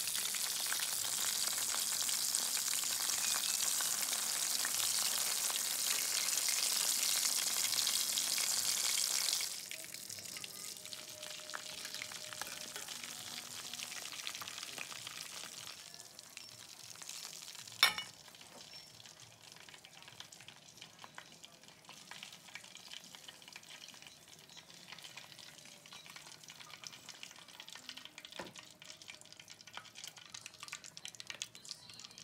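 Battered chicken pieces deep-frying in hot oil in a wok: a loud, steady sizzle that drops abruptly to a quieter sizzle about a third of the way in, and quieter again a little past halfway. A single sharp click comes soon after.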